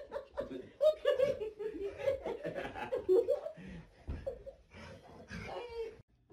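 A person laughing hard in quick repeated bursts, with a few exclamations, the laughter growing weaker over the last couple of seconds.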